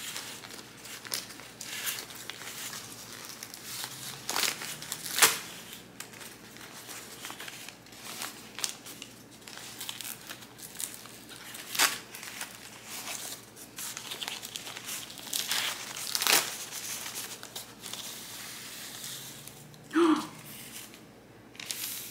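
White plant shipping packaging being opened by hand and pulled off the plant: continuous crinkling with sharp rips and crackles, the loudest about five seconds in and again around twelve and sixteen seconds.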